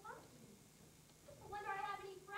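A girl's high-pitched voice on stage: a short rising syllable at the start, then a drawn-out, high phrase in the last half second. It is heard faintly from the audience.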